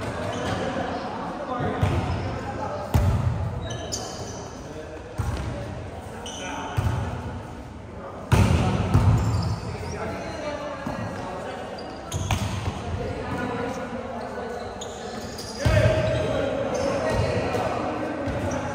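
Volleyballs being hit and bouncing on a gym floor: sharp, echoing smacks every few seconds, among players' voices and shouts in the hall.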